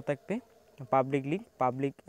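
A man speaking in short phrases, with a brief pause about half a second in.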